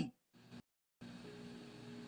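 Near silence over a video-call line: the sound cuts out completely for most of the first second, then a faint steady hum of room tone comes in.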